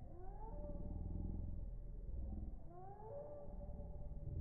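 Two rising animal calls about two and a half seconds apart, each gliding up in pitch and then holding a steady note.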